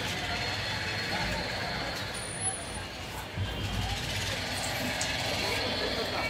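Steady din of vehicle engines with indistinct background voices, and a brief high squeal about two seconds in.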